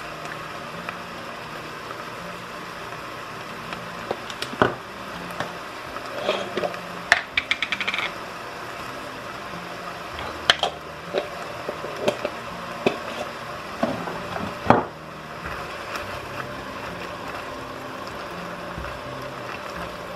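Corn and butter heating in an enamelled cast-iron pot beside a pot of water coming to the boil, a steady low sizzle under it, while salt and pepper go in: scattered knocks against the pot and a quick run of clicks about seven seconds in.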